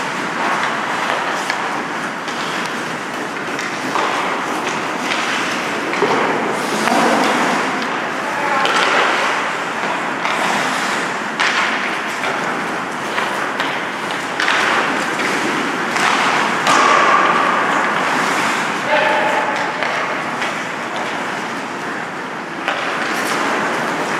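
Ice hockey being played on an indoor rink: a steady scrape of skates on the ice, sticks and puck knocking now and then, and players' voices calling out.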